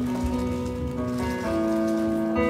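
A live praise band playing an instrumental passage: electric guitars and keyboard hold sustained chords that change about every half second over a low bass line.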